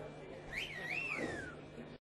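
A person whistling one short phrase about half a second in: the whistle slides up, dips and rises again, then falls away.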